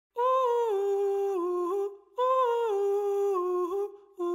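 Music: a wordless high vocal line, a short phrase stepping down over a few held notes, heard twice with a brief break between.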